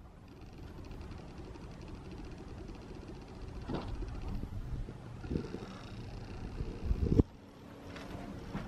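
Low steady rumble inside a steel locomotive body, broken by a few scattered knocks from movement in the cab, the loudest a thump about seven seconds in, after which the rumble drops away suddenly.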